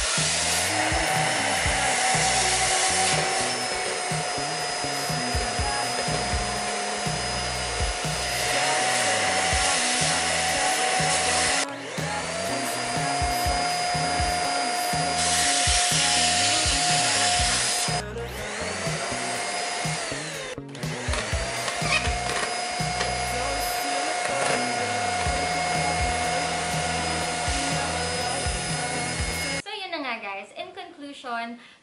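Two Deerma DX700 and DX810 vacuum cleaners running together as they suck up debris: a steady motor whine with a loud rush of air. About eighteen seconds in the whine drops in pitch and cuts out, then rises again as a motor restarts. Background music with a steady beat plays underneath.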